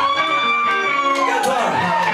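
Amplified live band music, heard from within the audience. A long held high note arches slightly in pitch and fades about a second and a half in, while a second line swoops down and back up beneath it.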